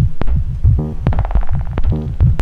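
BugBrand modular synthesizer playing an electronic groove: a quick pattern of low thumps and sharp clicks, with a short buzzy pitched note about once a second.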